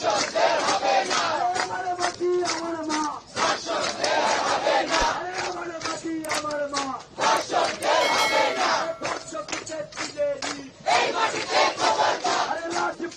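A crowd of protesters chanting slogans in unison, loud and sustained, with hand-clapping between the phrases.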